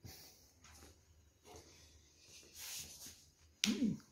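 Faint scattered clicks and soft rubbing of a phone being handled as it is moved around, with a short vocal sound just before the end. No engine is running.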